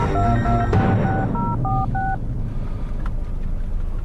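Mobile phone keypad tones as a number is dialled: about eight short two-note DTMF beeps over the first two seconds, over a steady low car-interior rumble.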